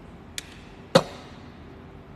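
Handling noise: a light tick, then about half a second later a sharper, louder knock with a brief ring, over a faint steady room hum.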